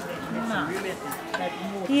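Indistinct voices talking, with light clinks of plates and cutlery as breakfast plates are set down at the table.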